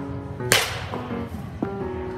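A baseball bat hitting a ball off a batting tee: one sharp crack about half a second in, followed by a fainter knock about a second later. Background music plays throughout.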